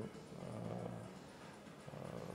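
A man's faint, steady low hum of hesitation with his mouth closed, during a pause in his speech.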